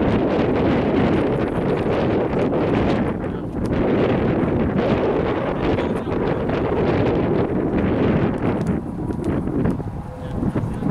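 Wind buffeting the microphone, a loud, uneven rumble with gusts that rise and dip every second or two.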